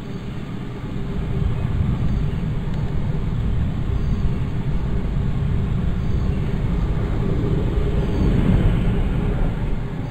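Steady low rumble of a car's engine and tyres heard from inside the cabin as it pulls slowly away, growing a little louder about a second in.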